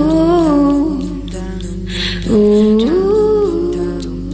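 Background music of a wordless vocal melody: a voice hums "ooh" in long held notes that glide up and down, in two phrases, the second beginning a little past halfway.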